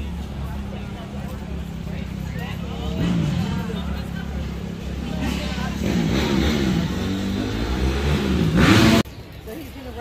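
A motor vehicle engine running nearby with a steady low hum, growing louder to a peak about nine seconds in, then cut off abruptly; people's voices over it.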